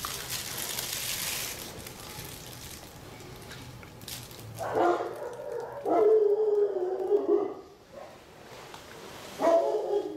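An animal's drawn-out howling calls, three of them: a short one, a long wavering one lasting about a second and a half, and a short one near the end. They follow a few seconds of rustling at the start.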